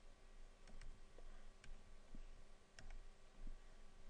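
A few faint, scattered clicks over quiet room tone, from someone operating a computer.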